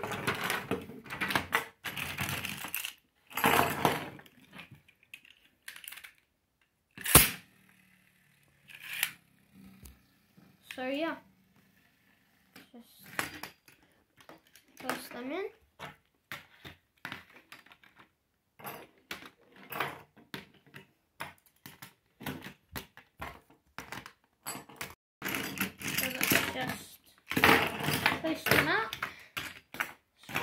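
Beyblade spinning tops clattering and clicking against each other and a plastic tray as they are gathered up by hand, with a sharp knock about seven seconds in.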